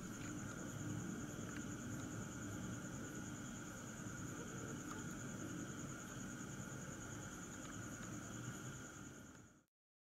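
Night insects, crickets, trilling steadily in two high pitches over a low rumble of outdoor background noise. The sound cuts off suddenly near the end.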